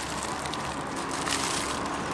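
Steady, even background noise of road traffic.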